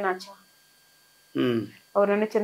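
Only speech: a woman talking, with a pause of about a second in the middle.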